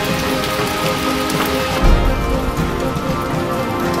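Rain pouring in a hurricane, under background music with steady held notes.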